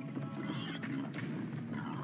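Film soundtrack music with an animal's calls heard over it.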